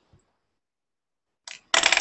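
Dead silence for over a second, then near the end a brief faint tick followed by a short, loud noisy burst.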